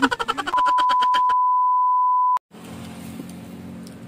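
An edited-in steady beep tone that runs for about two seconds and cuts off abruptly with a click, over the start of a voice chopped into a rapid stutter by an editing effect; after the cut, quieter outdoor background with a low hum.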